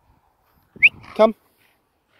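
A dog gives one short, high, rising yip about a second in.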